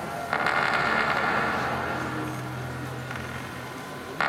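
Electronic sound design from a projection-mapping show's soundtrack: a dense, hissing wash of noise starts suddenly just after the start and slowly fades away. A low steady hum joins under it in the second half.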